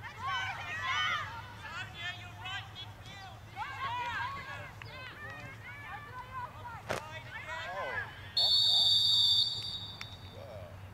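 Referee's whistle blown once in a long, steady, high blast of about a second near the end, the loudest sound, stopping play. Before it, players and spectators call out over the field, with a single sharp knock about seven seconds in.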